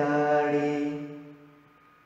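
A man's voice holds a long, steady sung note at the end of a chanted phrase, with no accompaniment, then fades away about a second and a half in.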